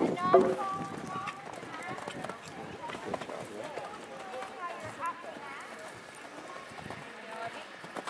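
Horse cantering on sand arena footing, its hoofbeats faint under quiet voices.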